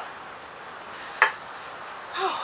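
A single sharp click about a second in: a small hard object knocking on a wooden tabletop, over faint room hiss.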